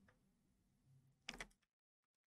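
Near silence: room tone, with a brief double click a little over a second in.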